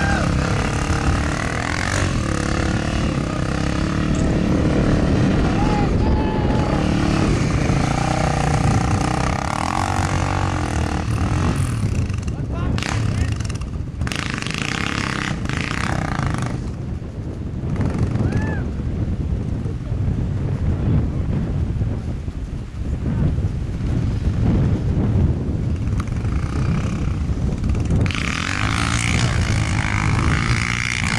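Dual-sport dirt bike engine running and pulling through loose sand, with spectators' voices talking over it early on and again near the end.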